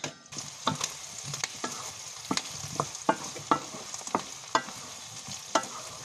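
Meat and onions frying in a pan, with a steady sizzle. A wooden spatula stirs them, knocking and scraping against the pan about twice a second.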